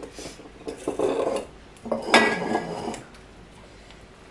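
Handling sounds at a kitchen counter: pomegranate seeds and fruit pieces are picked up and dropped into glass jars, with rustling and light clinks and knocks against the glass. It comes in two bouts, the second beginning about two seconds in with a sharper knock, and then grows quieter toward the end.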